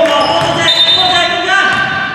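Basketball game sounds in a reverberant gym: the ball bouncing on the hardwood floor, sneakers squeaking, and players' voices calling out.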